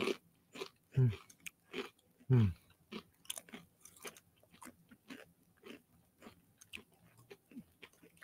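Someone chewing a crunchy snack close to a microphone: a run of quick, crisp crunches, with two falling 'hmm' hums in the first few seconds.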